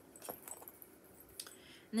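Faint handling noise: a few light clicks and rustles as small cross-stitch supplies are moved about by hand.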